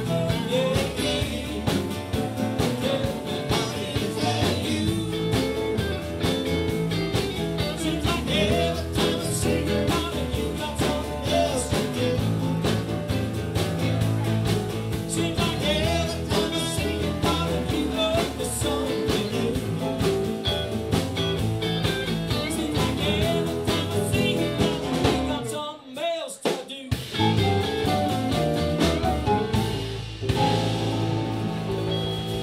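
Live band playing: acoustic and electric guitars, bass and drum kit, in a bluesy rock style. About 26 seconds in, most of the band drops out for a moment, then comes straight back in.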